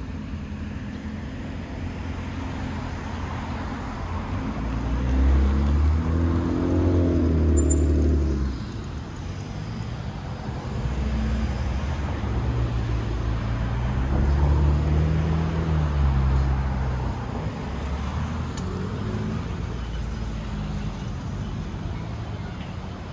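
Street traffic: the engines of passing motor vehicles over a steady road rumble. There are two louder passes, one about five seconds in and a longer one from about eleven to seventeen seconds in, each rising and then falling away in pitch and level.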